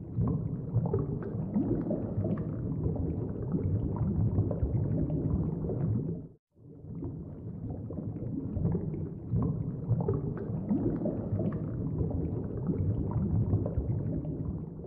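Low, gurgling bubbling of liquid, like bubbles rising through a drink. It runs dense and steady, cuts out abruptly for a moment a little after six seconds in, then starts again.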